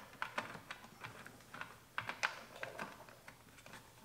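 Faint, irregular small clicks and taps from hands working on the stripped-down black plastic housing of a Honda Civic Type R door mirror.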